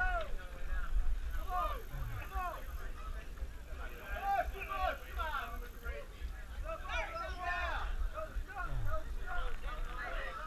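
Voices of several people calling out and talking at once, too indistinct to make out words, over a steady low rumble.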